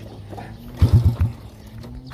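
Motorcycle engine running with a low steady hum, with a short loud burst of a few rapid low thumps just under a second in.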